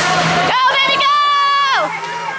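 A spectator's high-pitched shout, held on one note for over a second and dropping in pitch at the end, over crowd chatter in an ice rink.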